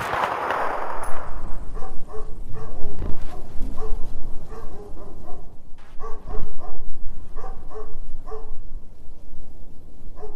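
A dog barking again and again in quick runs of short barks. Before the barking starts, a loud burst of noise fades out over the first second.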